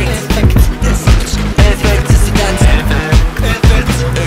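Hip-hop track playing loud: a dense drum beat over a heavy, sustained bass line.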